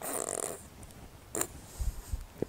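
A woman's short breathy laugh, then a quick breath about a second and a half in.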